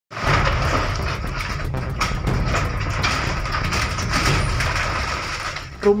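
A wooden house with a metal roof collapsing slowly as the ground beneath it shifts in a landslide: a continuous rumble with many cracks and knocks of breaking timber.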